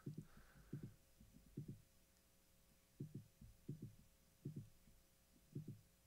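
Near silence: faint low thumps at uneven intervals, about one a second, over a faint steady hum.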